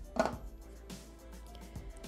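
Thermomix lid set onto the mixing bowl with a short thunk about a quarter second in, over faint background music.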